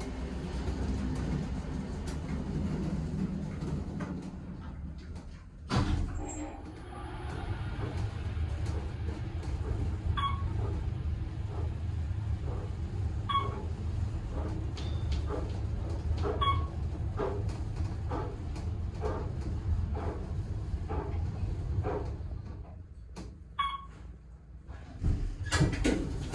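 Otis traction elevator ride: the car doors close with a knock about six seconds in, then the car travels up with a steady low rumble. Short beeps sound about every three seconds as it passes floors, the last one on arrival near the end.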